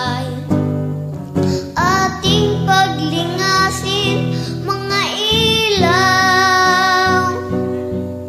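A Tagalog song: a high singing voice carries a melody of held and sliding notes over plucked acoustic guitar.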